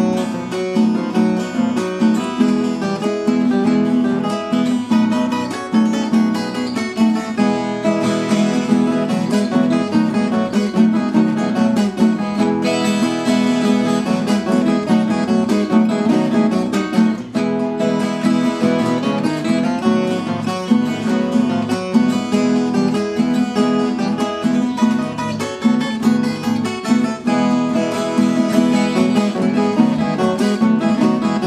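Instrumental duet on a viola caipira and a nylon-string guitar, plucked and strummed together in a steady rhythm.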